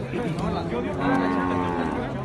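A cow mooing: one long call that swells in the second half and sags in pitch as it ends.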